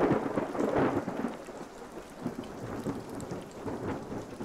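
Thunder rolling over steady rain: a loud crack at the start that rumbles and fades away under the hiss of the rain.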